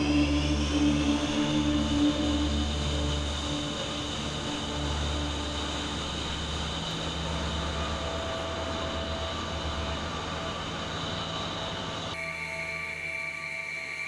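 Twin Saturn AL-31F turbofan engines of a taxiing Sukhoi Su-34 whining. The high whine rises at the start, holds steady, then drops to a lower pitch about twelve seconds in. Background music with a deep pulsing bass plays underneath.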